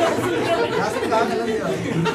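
Several voices talking over one another at once: audience members chattering back during crowdwork, with no single clear speaker.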